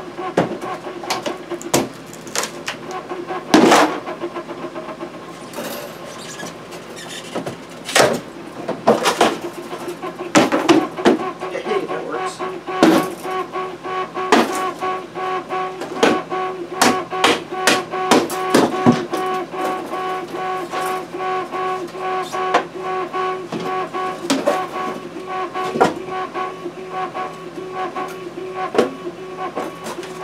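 A hammer knocking and prying a wooden shipping crate apart, in many irregular sharp knocks and bangs. Under them runs a steady pitched hum from a 3D printer's motors running a print job.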